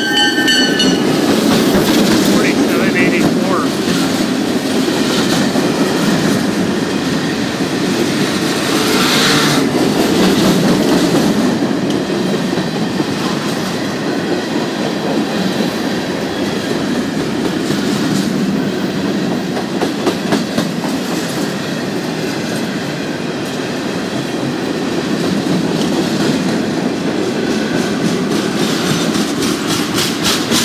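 A long freight train passing close by at speed: a pair of EMD GP38-2 diesel locomotives go by first, then a steady rumble and clickety-clack of loaded covered hoppers and tank cars rolling over the rail joints.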